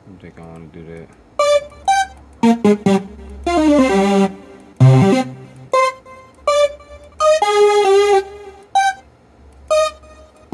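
Short sampled music chops from FL Studio's browser, played one after another over computer speakers. About a dozen brief keyboard- and synth-like snippets, some with a voice in them, each starting sharply and cut off as the next is clicked. A longer one with a sliding pitch comes about three seconds in.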